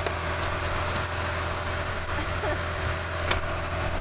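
A car engine idling steadily with a low, even hum, and one light click about three seconds in.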